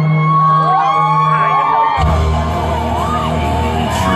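Loud live concert music over a hall PA, with audience members whooping and screaming. About halfway through, a deep bass beat kicks in suddenly under a held low synth tone.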